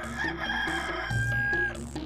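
Cartoon rooster crowing, one long held cry, over light background music with repeating low notes.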